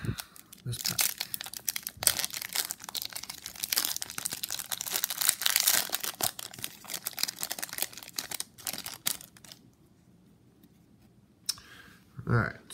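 Foil wrapper of a Topps baseball card pack being crinkled and torn open by hand: a dense, crisp crackle lasting about nine seconds that then stops.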